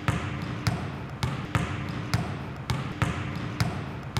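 A basketball being dribbled steadily, each bounce a sharp thud, about two bounces a second.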